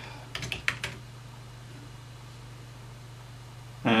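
About five quick computer keyboard keystrokes in the first second. After them only the steady low hum of the running computer remains.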